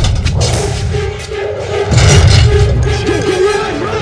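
Loud, tense orchestral film score with a heavy low end and a held note, swelling again about two seconds in.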